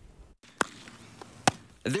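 Two sharp smacks of baseballs hitting leather gloves during a game of catch, about a second apart, the second louder.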